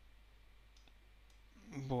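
A couple of faint computer mouse clicks over quiet room tone.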